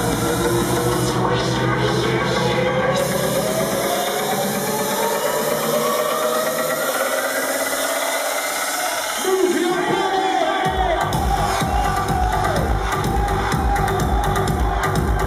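House dance track playing loud over a club sound system. The bass cuts out about four seconds in while a rising sweep builds, then the full bass beat drops back in near eleven seconds.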